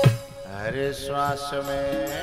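Devotional kirtan music: a voice sings a drawn-out, gliding phrase over a steady held note, and the drum beat stops right at the start.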